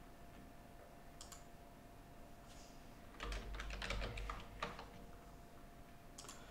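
Typing on a computer keyboard: a few faint keystrokes about a second in, then a quick burst of keystrokes from about three seconds in to nearly five.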